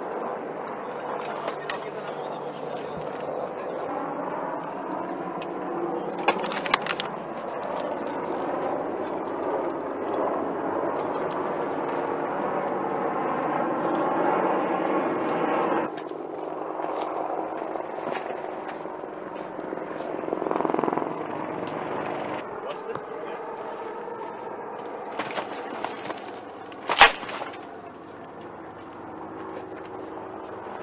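Indistinct voices over steady background noise, with a single sharp bang near the end.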